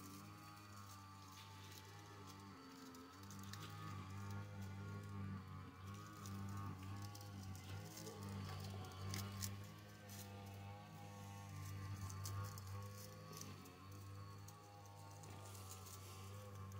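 Faint, steady drone of a lawn mower engine running some distance away, swelling and fading slightly, with light crinkling of fine copper wire being pulled off a coil.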